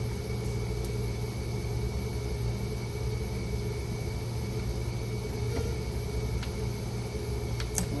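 Steady low machine hum with a faint, steady high-pitched whine. A few light plastic clicks come in the second half, the clearest just before the end, as bloodline tubing and clamps are handled.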